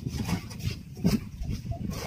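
Long-handled spade chopping and scraping into hard, dry soil in a small hole. There is a sharp strike about a second in among softer scrapes, and an animal call can be heard in the background.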